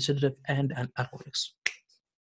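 A man's voice speaking in Arabic, breaking off after about a second, then a short hiss and a single sharp click near the end.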